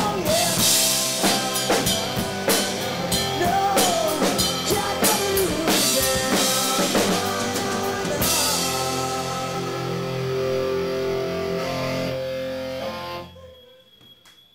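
Live rock band with electric guitars, bass and drum kit playing the last bars of a song: drums and guitars pound for about eight seconds, then the band holds a final ringing chord for about five seconds that stops sharply near the end.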